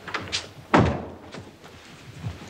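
A door being shut: a few light clicks, then a single loud thud just under a second in as it closes.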